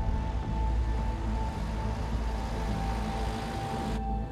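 Dark, sustained drama score: a low drone under a single held high tone. A hissing swell builds through the second half and cuts off abruptly at the end.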